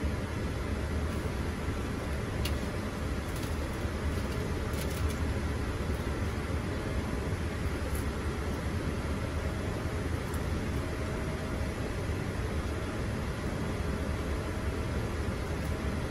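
Steady Boeing 787 cockpit noise in the climb: a constant rush of airflow and air conditioning over a low rumble, with a few faint clicks.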